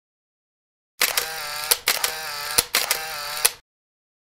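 Camera shutter sound effect: three quick rounds of a short motor whir, each ending in a sharp click, starting about a second in and cutting off suddenly.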